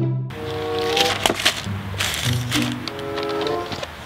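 Background music: a tune of held notes that step from one pitch to the next every half second or so, with a few sharp percussive clicks.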